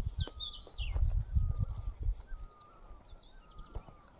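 Wild birds singing in the open: a burst of quick high chirps in about the first second, and short thin whistled notes repeating through the rest. A low rumble with thumps, louder than the birds, fills the first half and then dies away.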